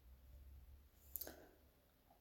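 Near silence with a faint low hum, and a single short click a little over a second in.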